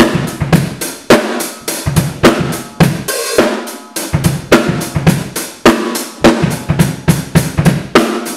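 Drum kit played live in a funk groove: kick drum, snare and hi-hat struck in a steady pattern of several strokes a second, with heavier accents about once a second.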